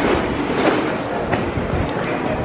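Steady noisy ambience of a large railway station concourse, with a few faint clicks.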